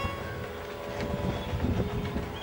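Uneven low rumbling noise, with a few faint steady tones held beneath it.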